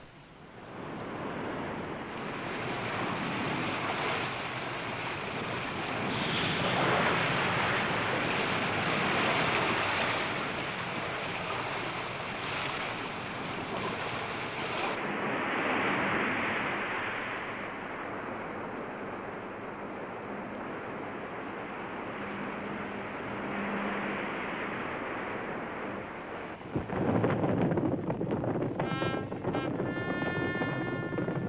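Sea and wind noise: waves and rushing wind that swell and ease in slow surges. Near the end the noise grows louder and a musical score with sustained pitched tones comes in.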